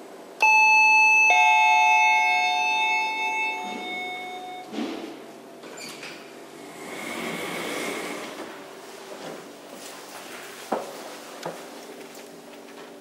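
Elevator arrival chime: two descending tones, ding-dong, each ringing out over about three seconds. It is followed by softer thumps and rumbling as the car is entered, and two sharp clicks near the end.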